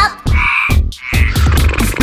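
Two short raspy cartoon sound effects, the first a little after the start and the second about a second in, over the beat of a children's song during its pause after "now stop!"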